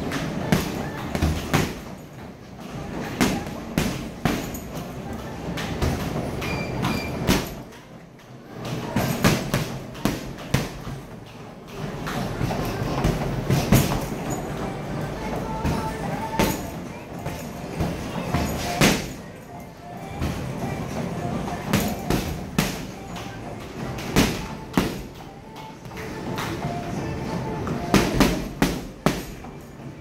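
Boxing gloves striking a heavy bag, thuds in quick combinations separated by short pauses.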